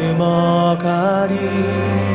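Male singer singing a slow Korean worship song into a microphone, holding notes with a rising slide about a second in, over sustained instrumental accompaniment.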